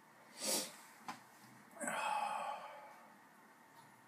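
A man breathing out heavily while feeling full from half a gallon of milk: a short sharp breath through the nose about half a second in, then a longer, louder sigh about two seconds in.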